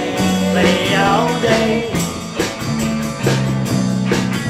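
Rock and roll band playing an instrumental passage between vocal lines: bass notes and drum hits on a steady beat under electric guitar, with a lead line that slides up and down in pitch.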